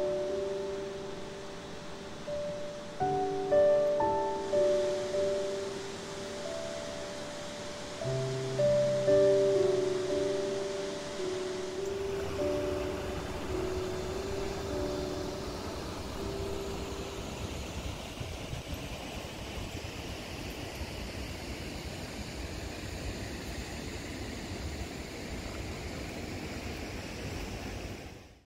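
Gentle instrumental background music playing a simple melody over the steady rushing of a large waterfall, the 70-foot Upper Falls. The music fades out a little past halfway, leaving the waterfall alone until it cuts off at the end.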